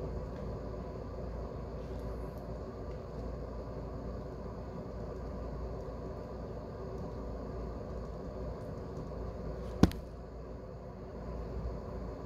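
Ballpoint pen writing on paper, with faint scratches and ticks over a steady low background hum. One sharp click comes about ten seconds in.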